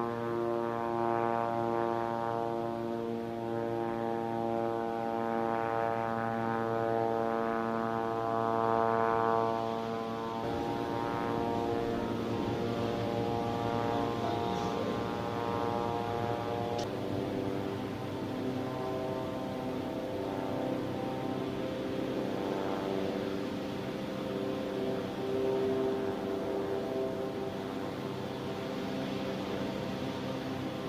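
A steady, low droning hum with many overtones, holding one pitch and stepping to a new one about ten seconds in and again near seventeen seconds.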